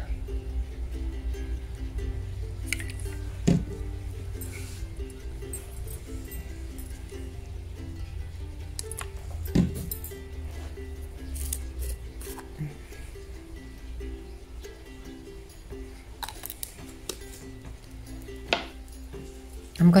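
Soft background music with a gently stepping plucked melody, over which a few light knocks and clicks sound: a few seconds in, about halfway, and near the end.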